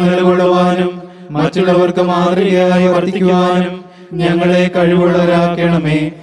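A man's voice chanting a liturgical prayer in long, held notes. It comes in three phrases with short breaks about a second in and about four seconds in.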